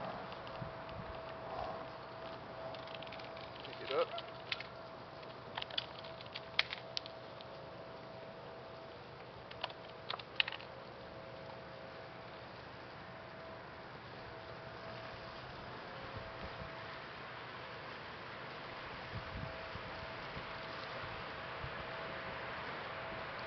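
A small boat's hull knocking and bumping against its carpeted stand as it is rolled over by hand. There are a few sharp clicks and knocks, most about four, six to seven and ten seconds in, over a faint steady hum.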